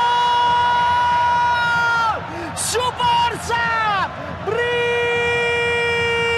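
A football TV commentator's long, high-pitched goal scream ("Gooool!") held on one note, falling off about two seconds in, then a few short shouted syllables and a second long held call near the end, over a stadium crowd.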